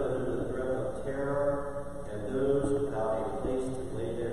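A congregation reciting a prayer aloud together in unison, in a near-monotone, many voices carrying in a reverberant church.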